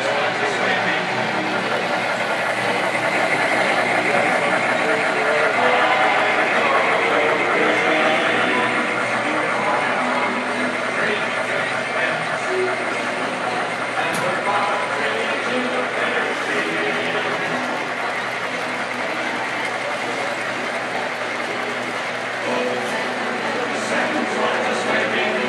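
Model trains running on the layout's track, mixed with indistinct chatter of people in the room.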